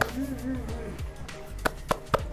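A man laughs briefly, in delight at a bite of food, over steady background music; a couple of sharp clicks come near the end.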